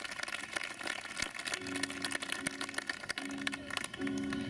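Scattered audience applause dying away, irregular claps with faint voices underneath from about a second and a half in.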